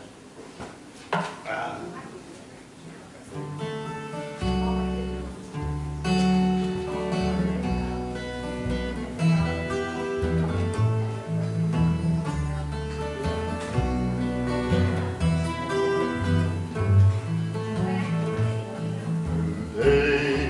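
An acoustic guitar and a plucked upright double bass start a song's instrumental introduction about four seconds in. Low bass notes move under the picked and strummed guitar.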